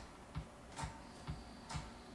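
Steady, faint ticking, a little over two ticks a second, each tick with a soft low thud under it.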